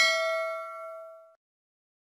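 Notification-bell 'ding' sound effect: one bright bell strike with several ringing tones that fade away over about a second and a half, then silence.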